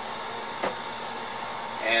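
Steady background hiss of room noise with one faint click about two-thirds of a second in. A man's voice starts near the end.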